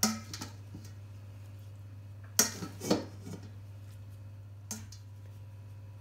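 A stainless steel colander knocking against a ceramic baking dish as cooked pasta is tipped out of it: a few sharp clinks, two close together about two and a half seconds in and a lighter one near five seconds.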